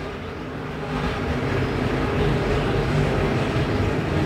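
A field of IMCA Modified dirt-track race cars, their V8 engines running at speed around the oval, a steady drone that grows a little louder about a second in.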